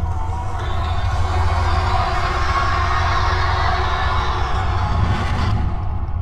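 Fire sound effect: a dense rush of burning flames that swells in about half a second in and cuts off abruptly near the end, over a steady low horror-music drone.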